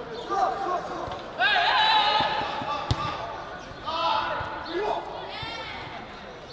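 Football players shouting to each other during play, the loudest call about a second and a half in, with the thuds of a football being kicked on artificial turf and one sharp kick about halfway through.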